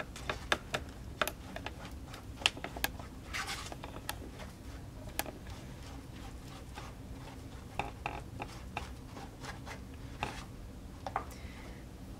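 A plastic stirrer scraping and tapping on a paper plate as white glue and shaving cream are mixed together, giving scattered sharp clicks and short scrapes.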